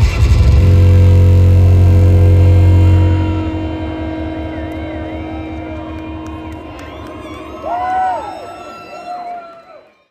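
Dubstep played by DJs through a concert sound system: a loud held bass note and chord ring for about three seconds and then slowly die away. Sliding, wavering high tones rise and fall over the decay, louder for a moment about eight seconds in. Everything fades out near the end.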